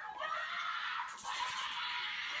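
A young boy screaming and crying in long, high-pitched cries, with a harsher, rougher scream about the middle.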